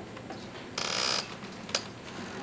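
A short rasping burst about a second in, then a single sharp click, from hands working a laptop at a lectern.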